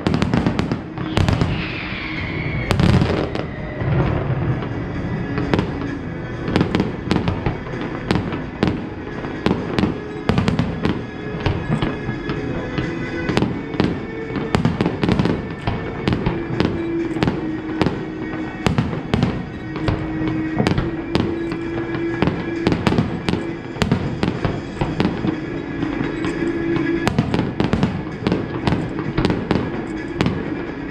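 Harbour fireworks display: a rapid, irregular run of shell bursts going off, several bangs a second, with a falling whistle about a second in.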